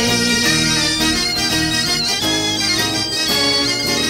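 Breton bagad pipe band playing a gavotte tune, bagpipes carrying the melody in steady held notes.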